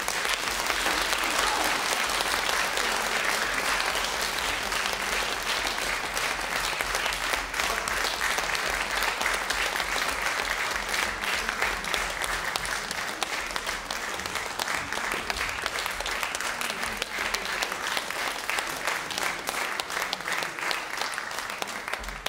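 Audience applauding steadily, a dense clatter of many hands clapping in a concert hall.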